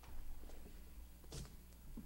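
Faint handling noises from a bag being unpacked on a table: a few soft knocks and one brief rustling scrape about a second and a half in.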